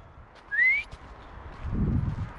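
A man gives one short, rising whistle to call his dog back, about half a second in. A low rumble follows near the end.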